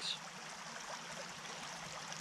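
A creek running steadily: an even wash of flowing water.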